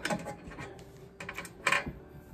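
A few faint clicks and taps of small plastic parts being handled: a disposable pen needle and an Ozempic injection pen. The sharpest click comes about three-quarters of the way through.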